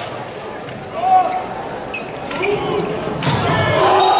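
A volleyball being struck by hands and arms during a rally: a few sharp hits, the loudest about a second in, with players calling out in a large arena.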